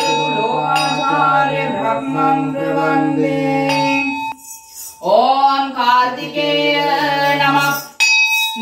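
Devotional singing over music: a voice holding long notes with a steady high tone behind it, breaking off briefly a little past halfway and then coming back in.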